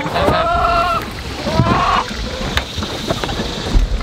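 Knocks and rustling as a wheeled wooden outhouse is lifted and carried through poultry netting, with two pitched rising-and-falling calls in the first two seconds and a low thump near the end.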